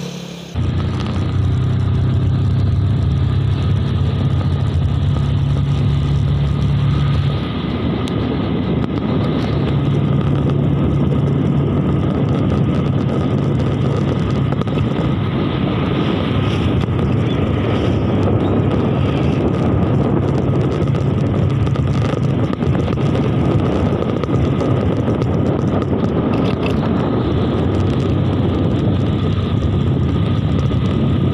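Motorcycle engine running steadily while riding along a road, with wind noise on the microphone; it starts abruptly about half a second in.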